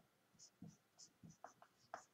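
Marker pen writing on a white board: a string of faint, short strokes.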